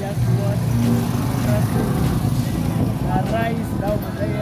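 Busy town street: a steady low engine hum from motor traffic, with people's voices coming and going over it.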